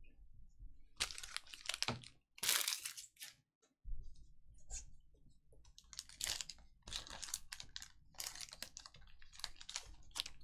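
A trading-card pack's plastic wrapper torn open and crinkled by hand, with cards rustling and sliding against each other: an irregular run of short crackles.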